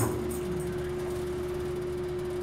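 A single steady tone held on after the music ends, unchanged in pitch and level, over faint room noise.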